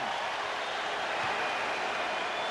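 Steady murmur of a large arena crowd, with one soft low thud just over a second in.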